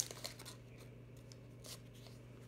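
Paper wrapper of an adhesive bandage being peeled apart by hand: a sharp crackle at the start, then a few faint rustles.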